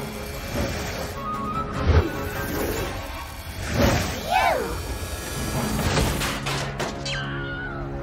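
Cartoon soundtrack: background music under short, high, gliding vocal cries from the animated characters, the loudest about four seconds in, and a sharp hit about two seconds in.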